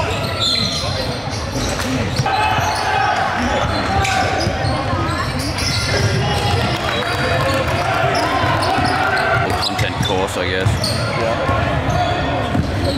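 Indoor basketball game: many voices from players and spectators calling and shouting at once, with the ball bouncing on the hardwood court, all echoing in the hall.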